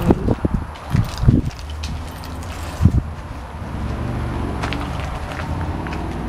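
Bumps and rubbing of a handheld camera being carried while walking, several knocks in the first few seconds, over a steady low rumble that grows slightly fuller near the end.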